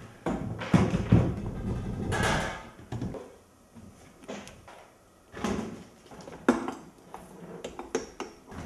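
Irregular knocks, clinks and a brief rustle of hard objects and cables being handled and set down, with quieter gaps between.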